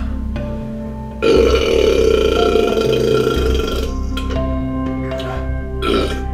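A man's long, loud burp starting about a second in and lasting nearly three seconds: gas coming up after chugging carbonated Sprite. A shorter burst follows near the end, over steady background music.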